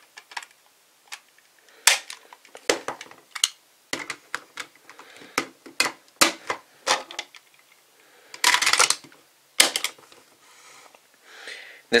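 Hard plastic Zyuoh Cube toy pieces being fitted and snapped together into a combined robot: a series of separate sharp clicks, with a short rattling scrape about two-thirds of the way through.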